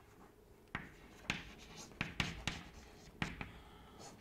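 Chalk writing on a chalkboard: faint, short taps and scratches as letters are formed, starting about three-quarters of a second in.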